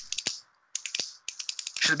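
Computer keyboard typing: a quick run of light key clicks, with a short pause about half a second in.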